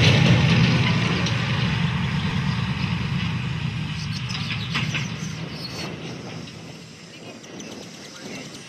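A motor vehicle's low engine rumble, loudest at first and fading steadily away over several seconds as it moves off.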